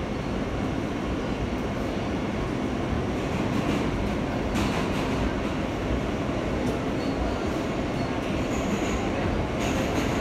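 New York City subway car running from a station into the tunnel, heard from inside the car: a steady rumble of wheels on rails, with a couple of brief clatters about halfway and near the end.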